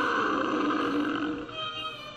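A loud, rough roar-like animal call from a cartoon soundtrack, over background music. It breaks off about one and a half seconds in, leaving the music.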